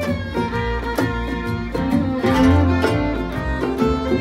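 Acoustic bluegrass band playing an instrumental break live, a fiddle carrying the lead over mandolin, acoustic guitar and upright bass.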